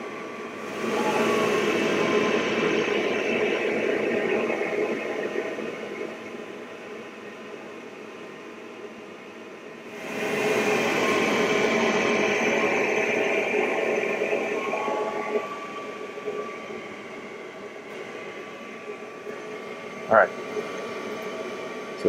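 Wainlux L6 diode laser engraver cutting a test grid in EVA foam: a steady hum and tone from its air assist and exhaust fan, with two stretches of louder mechanical whirring, each a few seconds long, as the laser head moves and cuts. One short sharp sound comes near the end.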